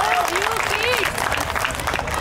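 Audience clapping, with voices calling out over the applause, as the dance music fades out at the start.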